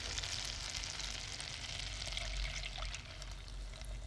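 Very hot butter caramel sizzling and crackling in a saucepan off the heat, with cream being poured into it near the end.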